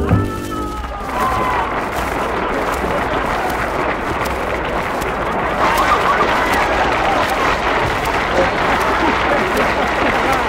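The last sung note with the band ends about a second in, and an audience breaks into steady applause.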